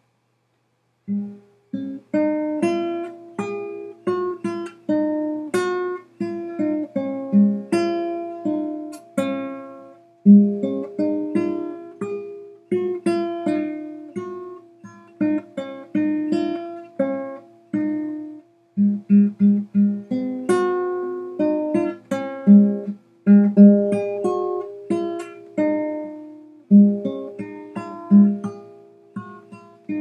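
Classical guitar played solo, a very simple melody plucked one note at a time over low bass notes, at an unhurried pace with a few short pauses between phrases: a beginner's exercise read from sheet music.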